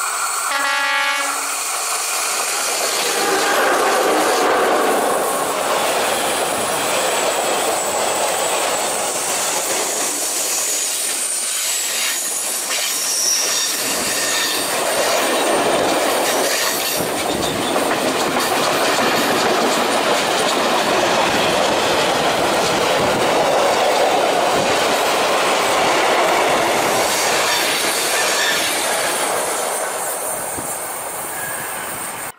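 Freight train passing close by. The electric locomotive gives a short horn blast at the start, then the loaded timber wagons roll past with steady wheel-on-rail noise and clatter, easing off near the end as the last wagons go by.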